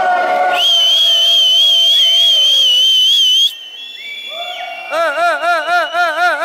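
Dub siren on the sound system: a high, steady tone with a slight wobble that cuts off abruptly and leaves a fading echo, then lower tones sliding up into a fast siren warble that rises and falls about four times a second.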